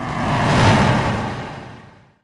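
A whoosh sound effect for an animated logo: a noisy swell that builds over about half a second, then fades away over the next second and a half.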